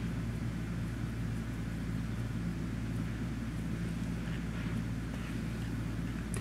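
Steady low background hum with no speech, the constant drone of a room's machinery or recording noise, with a few very faint soft touches over it.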